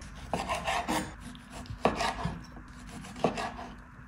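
Kitchen knife sawing through a ripe tomato into slices, the blade rasping through the skin and knocking on a wooden cutting board several times as each slice is cut through.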